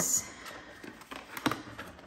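Paper banknotes being slid into a clear plastic cash envelope: soft rustling and small clicks, with one sharp tick about one and a half seconds in.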